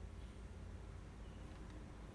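Quiet room tone: a steady low hum, with a faint tick near the end.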